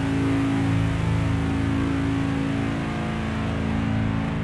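Slow doom/death metal: heavily distorted guitars and bass holding a low, sustained chord.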